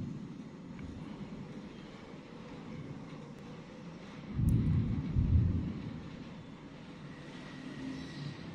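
Steady low outdoor rumble with no clear bird calls, and wind buffeting the microphone in a louder low surge lasting about a second, midway through.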